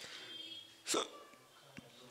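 A pause in a man's talk at a close microphone: faint mouth sounds, then one short, sharp intake of breath about a second in.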